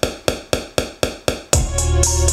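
Electronic R&B beat in which the bass and chords drop out for about a second and a half while one sharp percussion hit repeats about four times a second, like a drum fill. The full beat then comes back in with deep bass.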